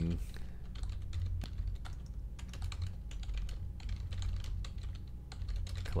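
Typing on a computer keyboard: a quick, uneven run of key clicks as a sentence is typed, over a steady low hum.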